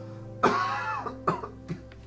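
A burst of laughter about half a second in, followed by two short laughing breaths, over soft background music with sustained tones.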